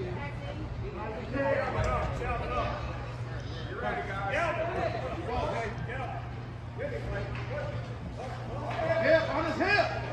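Indistinct voices of players and spectators calling out in an indoor sports arena, over a steady low hum; the voices get louder near the end.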